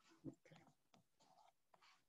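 Near silence with faint scratchy rustles and light taps, like keys and a mouse or touchpad being worked at a computer.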